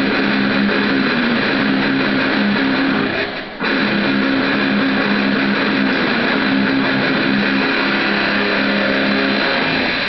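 Two electric guitars tuned down to D# standard playing a metal instrumental duet through amplifiers. The playing breaks off briefly about three and a half seconds in, then comes straight back in.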